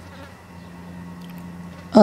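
A steady low hum over faint background noise.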